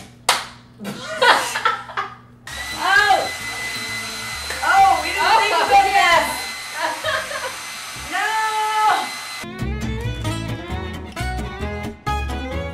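Handheld hair dryer running at full blast: a steady rushing of air with a thin high whine, starting a couple of seconds in. About two and a half seconds before the end it stops and upbeat guitar music takes over.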